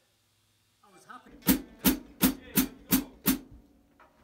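Six evenly spaced strikes on a drum kit, about three a second, each sharp and briefly ringing, then stopping.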